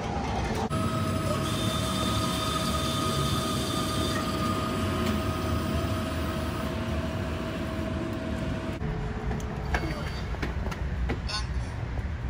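Coffee vending machine brewing and dispensing a cappuccino into a paper cup: its pump and motors start about a second in and run with a steady hum and a thin whine, then cut off suddenly about nine seconds in. A few clicks follow.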